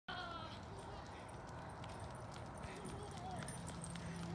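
Faint, distant voices, too far off to make out, with scattered light clicks.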